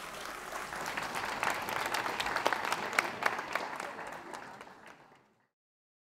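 Audience applauding, many hands clapping together, fading out about five seconds in.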